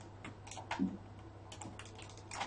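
Faint computer keyboard keystrokes: a few quiet clicks about half a second in and a quick cluster near the end.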